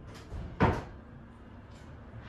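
An interior door being opened: a small click of the handle and latch, then a single louder knock from the door a little over half a second in.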